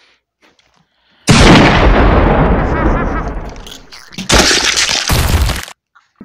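A loud explosion-like blast about a second in, fading away over nearly three seconds, then two shorter loud bursts close together near the end.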